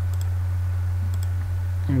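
A steady low electrical hum with a few faint computer mouse clicks: a quick pair near the start and another about a second in. A voice begins at the very end.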